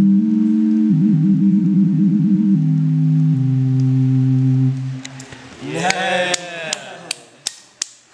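Small handheld synthesizer playing low held notes, with a warbling vibrato passage about a second in. The notes stop near five seconds. A brief swooping tone that rises and falls follows, then a few sharp claps near the end.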